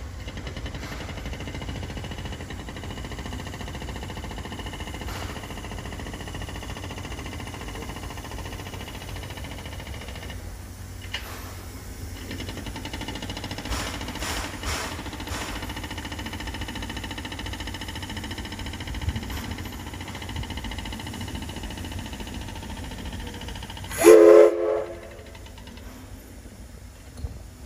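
C11 steam locomotive with a low, steady rumble and faint hiss, then one short blast of its steam whistle about two seconds before the end, by far the loudest sound.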